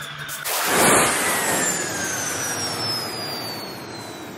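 Cinematic transition sound effect: a sudden loud hit about half a second in, followed by a rushing noise that fades over about three seconds with a whistle falling steadily in pitch.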